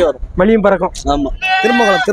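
Livestock bleating once, a steady call of about half a second near the end, over men talking.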